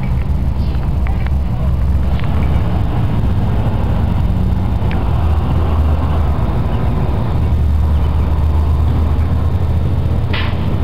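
Steady low rumble of wind buffeting the camera's microphone, with a few faint clicks.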